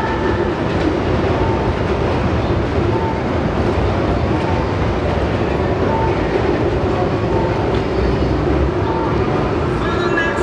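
Loud, steady rumble and clatter of a passing train, drowning out the music from the street screens.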